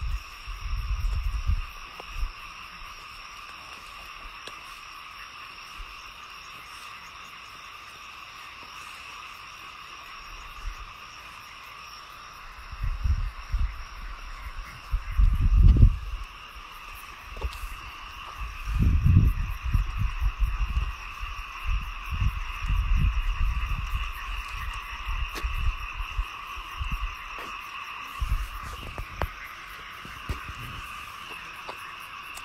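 A steady chorus of small calling animals holds two unchanging pitches throughout. A little before halfway, irregular low squelching thuds begin as bare hands dig and scoop wet mud; they come in clusters and are loudest near the middle.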